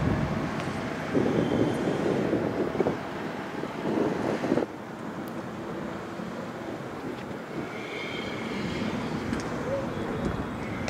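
Rough outdoor noise of a vehicle engine running with wind buffeting the microphone, loudest in two stretches in the first half; the level drops suddenly a little under halfway through and stays lower and steadier after.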